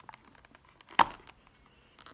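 Fingers picking and scratching at the packaging tape on a small cardboard toy box, faint and fiddly, with one sharp snap about a second in.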